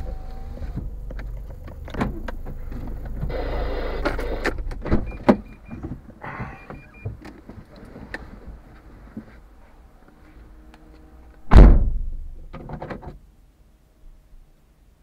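Handling sounds inside a stationary car: scattered clicks and short whirs over a low hum that dies away about nine seconds in, then one loud thump near the end, the loudest sound, and a brief rattle after it.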